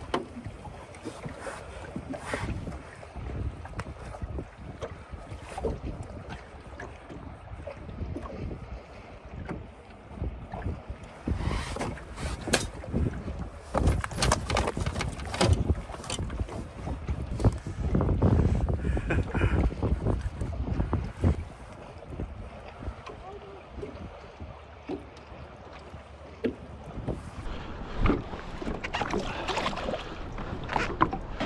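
Wind buffeting the microphone on a small fishing boat, with scattered knocks, clunks and rustles of handling. The wind grows stronger through the middle.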